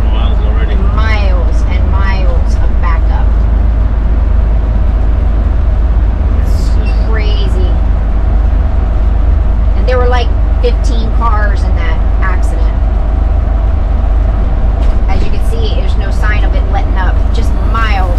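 Cabin noise of a gas Class A motorhome cruising at highway speed: a loud, steady low rumble of engine and road.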